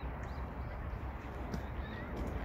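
Steady low rumble of outdoor background noise, with no distinct event standing out.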